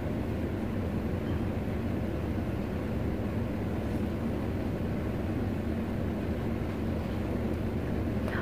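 Steady low rumble of background noise at an even level, with no distinct events.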